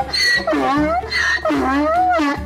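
Donkey braying: a run of hee-haw calls, about two a second, alternating between a higher and a lower note.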